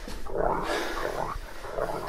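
A low, rough animal growl that comes and goes.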